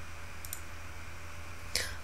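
Computer mouse button clicking: a quick double click about half a second in, over a low steady hum. A short burst of noise follows near the end.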